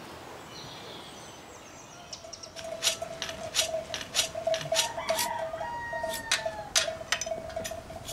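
Iron hand shears being whetted on a sharpening stone: sharp metallic scraping strokes, two to three a second, starting a couple of seconds in. Chickens sound in the background, and a steady held tone runs underneath.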